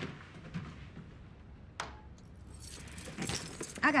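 A single sharp click about two seconds in, then a second or so of small metallic clinks and jingling with rustling, like keys jangling.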